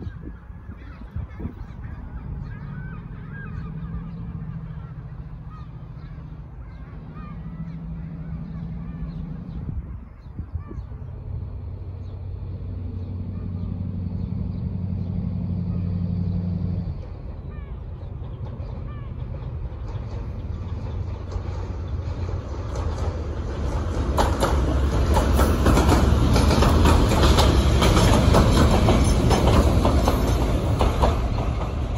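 Double-headed Class 68 diesel-electric locomotives with a freight train approaching: a low diesel engine note first, stepping in pitch, then growing louder until the leading locomotive passes close near the end with a loud rumble of engine and wheels.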